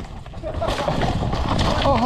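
Mountain bike descending a dusty, rocky dirt trail: a steady rush of tyre and rattle noise from the tyres on loose dirt and rocks.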